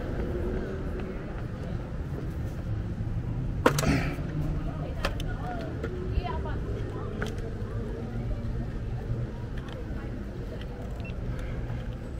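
Electric scooter rolling along a city sidewalk: a steady low rumble from its wheels on the pavement and wind, with one sharp knock a little under four seconds in and a few lighter clicks after it.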